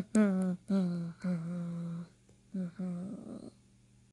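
A person's voice making a string of drawn-out hummed sounds, most sliding down in pitch and then holding steady, with a short break partway through and ending about three and a half seconds in.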